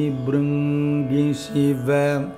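A group of men's and women's voices singing together an octave apart, in Carnatic style in raga Surutti. They hold long steady notes with brief dips in pitch.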